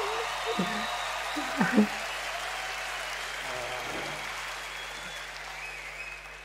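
Audience applauding a stand-up comedian's punchline, the applause slowly fading, with a couple of short voice sounds over it in the first two seconds.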